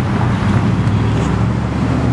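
2008 Harley-Davidson Ultra Classic's 96-cubic-inch V-twin engine idling steadily.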